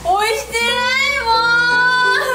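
A young woman's tearful, drawn-out whining wail, "o-oshitenai mooon" ("I didn't press it!"), the last syllable stretched into a long held cry, over light background music.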